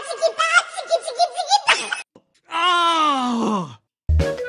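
Dubbed comedy voice effects: a high, wavering laughing voice in quick bursts for about two seconds. After a short pause comes one long groan that slides steadily down in pitch.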